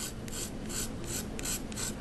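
Craft knife blade scraping a pastel stick in quick repeated strokes, about four to five a second, shaving pastel dust onto water for marbling.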